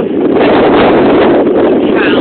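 Strong wind blowing across a phone's microphone: loud, steady wind noise with no break.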